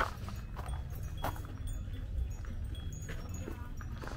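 Open-air market ambience: a steady low rumble with faint scattered clicks and a few brief, faint high tinkles.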